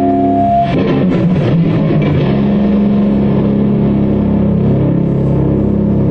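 Punk rock band playing an instrumental passage: electric guitar and bass guitar. A high held note breaks off under a second in, a few sharp hits follow, and low chords are then held.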